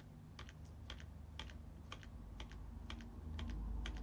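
A computer keyboard's arrow-down key tapped over and over to step through a list, giving light clicks about two or three times a second. A faint low hum grows louder near the end.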